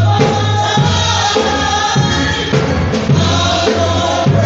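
A small praise team singing a gospel song into microphones, several voices together over instrumental backing with a steady low bass line.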